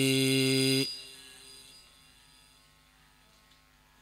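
A man's voice holding the final note of a chanted khassida line into a microphone, steady in pitch, cut off about a second in; its echo fades over the next second or so, leaving near silence until the next line.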